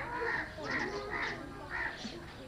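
Crows cawing: about five short calls in quick succession, roughly two a second, over a background of distant voices.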